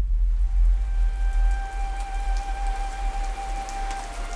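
Steady rain, laid in as an ambience effect, with a single held musical tone and its overtones sounding over it from about half a second in. A deep low rumble under it fades away.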